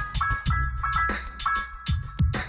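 Outro music with a steady drum beat and short repeating high notes.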